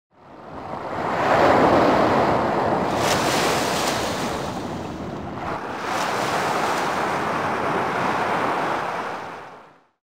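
Surf washing up a sandy beach, a steady rush of water that swells twice. It fades in at the start and fades out near the end.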